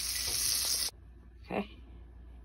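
Butter sizzling as it melts in a hot nonstick frying pan, a steady hiss that cuts off suddenly about a second in. After that it is quiet, with one brief short sound about halfway through.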